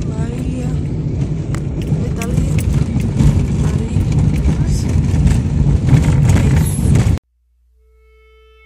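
Road and engine noise inside a moving car's cabin: a heavy, steady low rumble that cuts off abruptly about seven seconds in.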